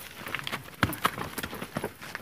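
Footfalls of several people running and jumping down a dirt bank, an irregular patter of thuds and scuffs on loose earth, with a few harder landings.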